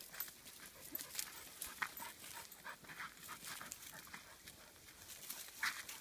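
A dog panting, with irregular crackles of dry leaf litter being walked on.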